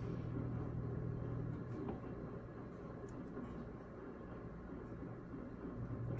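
Star San sanitizer running out of the unitank's coil into a plastic pitcher: a faint liquid hiss that slowly fades, over a low steady hum.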